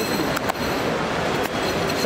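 Steady, loud rumbling background noise of a busy airport forecourt, with a few sharp clicks about half a second in and again near the end.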